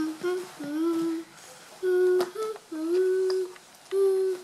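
A girl humming a tune with her mouth closed, a string of held notes each lasting around half a second to a second, with a short sharp click about halfway through.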